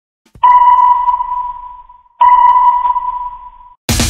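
Sonar-style ping sound effect: two pings about two seconds apart, each a clear tone that fades away. Music cuts in right at the end.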